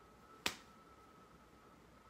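A single short, sharp click about half a second in, over quiet room tone with a faint steady high-pitched whine.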